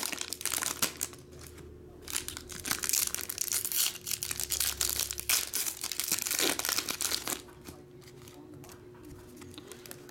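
Foil trading card pack wrappers being torn open and crinkled by hand, in two bouts of dense crackling, with a quieter pause about a second in and the sound dying down for the last few seconds.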